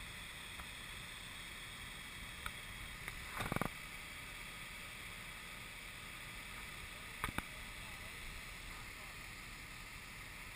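Fire hose nozzle flowing a steady stream of water: a continuous rushing hiss. A brief knock about a third of the way in and a couple of sharp clicks about three-quarters through.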